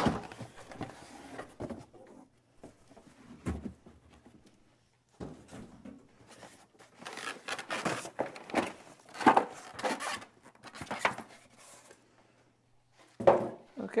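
A cardboard box and styrofoam packing being handled: irregular scraping, rubbing and light knocks as the espresso machine is slid out of its box and the foam end caps are pulled off. The handling comes in bursts with short pauses, busiest in the second half.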